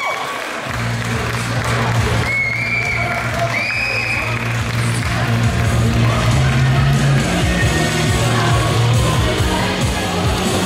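Music playing over a hall PA with an audience cheering, and two high rising calls from the crowd about two and three and a half seconds in.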